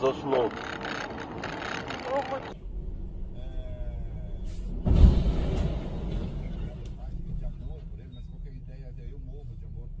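A container semi-trailer overturns: one heavy, low crash about five seconds in, followed by a steady low rumble picked up by a dashcam microphone. Before it, in the first seconds, a voice from a different clip.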